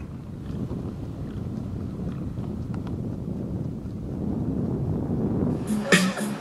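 Wind buffeting the microphone, a steady low rumble. Music with a beat cuts in just before the end.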